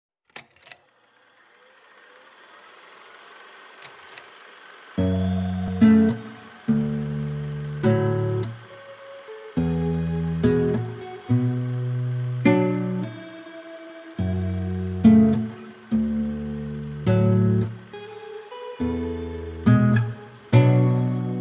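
Instrumental song intro: two faint clicks, a soft swell rising for about four seconds, then electric guitar chords entering about five seconds in, struck and held in a stop-start rhythm with short gaps between them.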